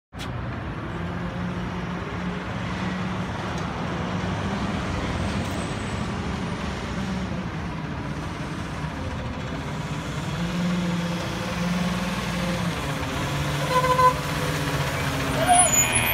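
Diesel engine of a front-loading garbage truck running as the truck drives up and passes close by, slowly growing louder. A few brief high squeals come near the end.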